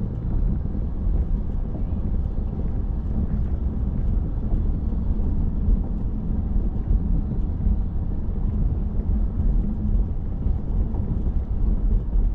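Steady low rumble of a car driving along a city road: tyre and engine noise.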